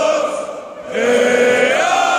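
Large crowd of football fans singing a chant together in unison, in a big echoing hall. The singing holds a long line, drops away briefly about half a second in, then comes back in strongly.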